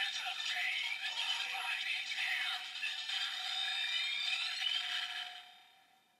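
A toy transformation belt's small speaker plays an electronic jingle, a held tone with sweeping synth notes over it, which fades out near the end. The sound comes from a DX Gamer Driver with the Kamen Rider Chronicle Gashat inserted.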